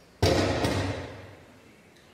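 A sudden loud thump about a quarter second in, with a second knock about half a second later, the sound dying away over about a second.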